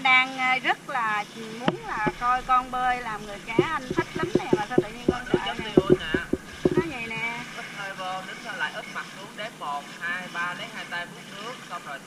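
High-pitched voices talking and calling out, unclear words, with a quick run of sharp slaps about four to seven seconds in.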